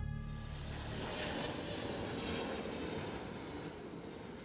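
Jet airliner flying low on landing approach: a steady rushing engine noise with a faint whine, swelling a little about a second in and easing toward the end. Soft music fades out at the start.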